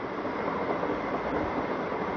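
Steady background noise, a hiss with a low rumble beneath it, holding even with no distinct events.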